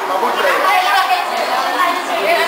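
Several people talking at once: overlapping chatter with no single clear voice.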